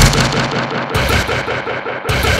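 Breakcore track in a brief breakdown: the heavy drums and high end drop away, leaving a choppy, repeating mid-range sound that PANN hears as engine-like.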